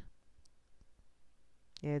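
A few faint clicks in a near-quiet pause in speech. A voice starts again near the end.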